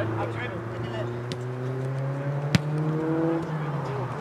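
A football kicked hard once, a sharp smack about two and a half seconds in, over the steady hum of a nearby engine that slowly rises in pitch, with faint shouts from players.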